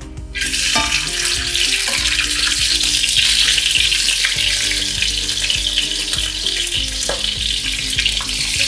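Chicken skin sizzling loudly in hot lard in a frying pan as it is laid in with tongs to fry into chicharrón. The sizzle starts suddenly as the first piece hits the fat.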